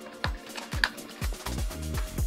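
Background music with a steady beat, with a few faint crinkles and clicks of a plastic blister pack being pulled open.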